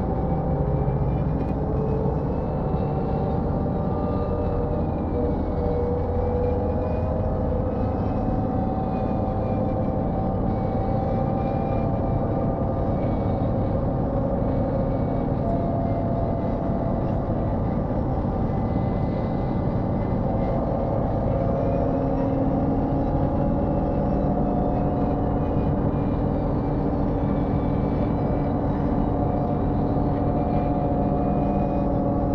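Inside a Mercedes-Benz O405N2 city bus cruising at a steady speed on a motorway: its OM447hLA six-cylinder diesel engine running steadily under road and tyre noise, with a faint high whine that rises and falls slightly.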